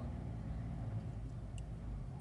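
Steady low background rumble with no speech, and one faint click about one and a half seconds in.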